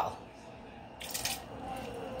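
A short, soft noise of kitchen handling about a second in, then faint shuffling sounds.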